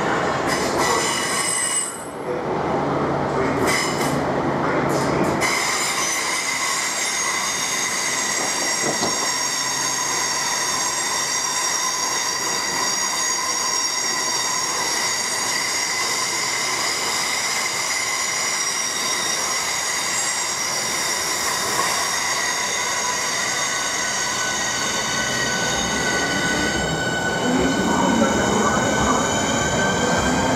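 Southeastern Electrostar electric trains running through the station, with a steady, high-pitched squeal of several tones that holds for most of the time. A further whine rises slowly in pitch in the second half.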